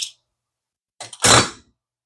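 A small click, then about a second in a short, louder clatter of a wrench and the baitcasting reel's handle hardware being handled as the handle's retaining nut is taken off.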